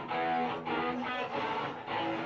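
Electric guitars of a live rock band playing a picked intro riff, with notes changing a few times a second and no drums yet.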